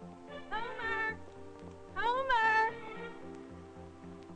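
Two cries from a pet animal over background music, each under a second long and rising then falling in pitch. The first comes about half a second in and the second, louder one about two seconds in.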